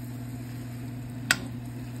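Greens sizzling in a stainless steel frying pan over a steady low hum, with one sharp clink of the metal spoon against the pan a little past halfway.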